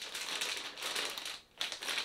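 Clear plastic bag crinkling as hands rummage a packaged part out of it, a run of quick crackles that stops briefly about a second and a half in, then picks up again.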